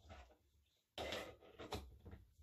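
Metal clunks from a stainless steel cocktail shaker being handled and capped: a short clatter about a second in, then a sharper knock near the end.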